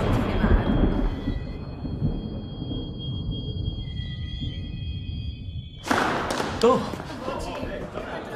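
Film soundtrack: a low rumble under sustained high music tones, then about six seconds in a sudden switch to a louder, busier scene with voices.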